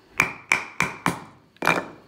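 Five sharp knocks, four in quick succession and a last one after a short pause, each with a brief metallic ring, as the aluminum hammer handle with a steel socket over its end is knocked against a wooden two-by-four. This drives the braided vinyl hose grip the last distance onto the handle.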